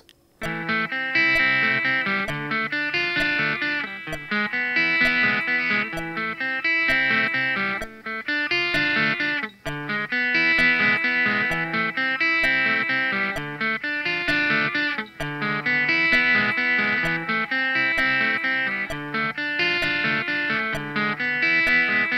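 Squier Stratocaster electric guitar playing a steady sixteenth-note arpeggio pattern through an Am–Dm–E7–Am chord progression, changing chord about every four seconds, over a metronome ticking at 65 beats per minute.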